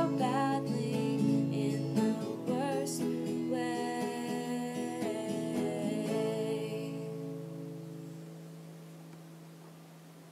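Acoustic guitar playing with a few last wordless sung notes over it, then a final chord left to ring out and fade away slowly.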